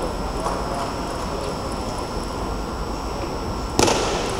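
Steady background noise of a large sports hall with a faint high whine and a faint murmur of spectators, a few faint clicks, and one short loud knock near the end.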